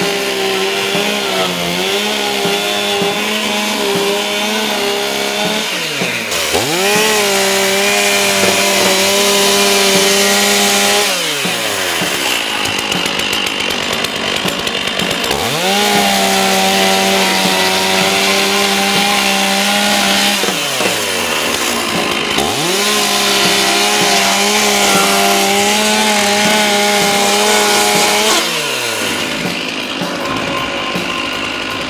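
Stihl two-stroke chainsaw cutting a ventilation opening through plywood roof decking: four long stretches at full throttle, its engine note falling off between cuts as the saw is eased back and repositioned.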